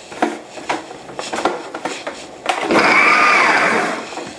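A few light clicks and knocks, then a food processor runs in one short pulse of about a second and a half, chopping pineapple pieces in their juice. The motor stops just before the end.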